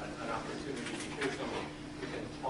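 A man speaking in a small room over a steady low hum; the words are not made out.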